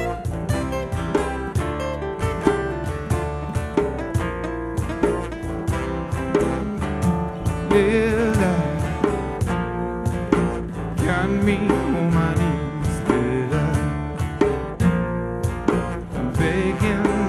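Acoustic band playing live: plucked acoustic guitar with a voice singing about halfway through.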